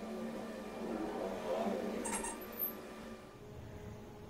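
Faint handling noise of fingers working plastic parts, over a low steady hum, with one sharp click about two seconds in. The sound drops quieter about three seconds in.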